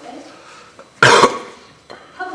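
A single loud, sharp cough about a second in, close to the microphone, amid speech.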